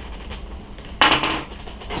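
Small metal tools clatter briefly on a desk about a second in as one is picked up, over a low steady hum.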